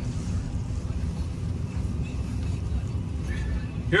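Steady low rumble of a 2012 Ram 1500's 5.7-litre Hemi V8 and its tyres, heard from inside the cab while the truck drives slowly.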